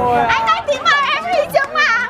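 A group of young people laughing and talking excitedly over each other.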